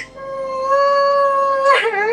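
A woman crying aloud: one long, steady wail, then a sharp catch of breath and a second, slightly falling wail near the end.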